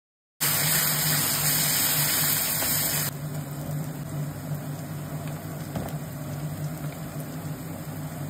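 Vegetables sizzling in hot oil in an iron kadai. The sizzle starts abruptly, is loud for about three seconds, then drops to a quieter crackle, over a steady low hum.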